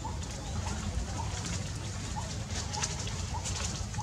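A bird repeating one short, rising note about twice a second, over a steady low outdoor rumble with scattered faint clicks.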